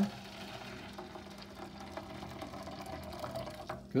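Just-boiled water poured from a kettle into a square metal baking pan: a steady splashing pour that dies away shortly before the end.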